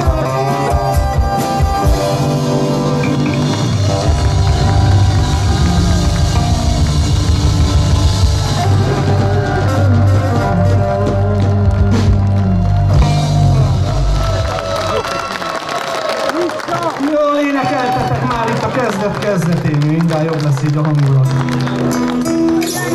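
Live band music: acoustic guitar and electric keyboard with a drum kit, full and heavy in the low end. About two-thirds of the way through, the bass and drums drop out, leaving a lighter, sparser passage.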